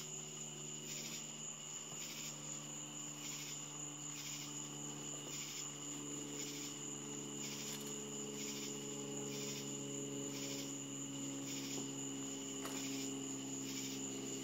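Crickets chirping at night: a steady high trill with a second, pulsing chirp repeating about one and a half times a second. A faint steady low hum runs underneath.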